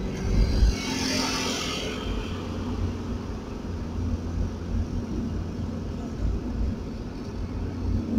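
Car driving on a road, heard from inside the cabin: a steady low rumble of engine and tyres, with a brief hiss about a second in.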